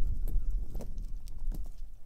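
Wind buffeting the camera microphone in a heavy low rumble, with about five irregular footsteps knocking on the path.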